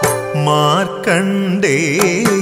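Music from a Malayalam devotional song to Shiva: a sustained melodic line that slides upward in pitch and wavers, over a steady low accompaniment with a few light percussion strikes.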